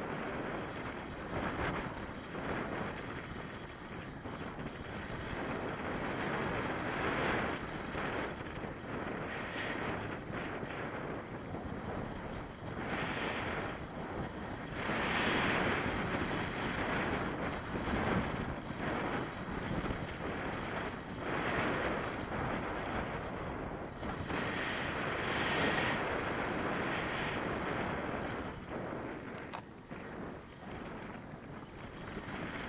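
Wind from the paraglider's airspeed rushing over the body-mounted camera's microphone, a steady roar that swells and eases in gusts every few seconds.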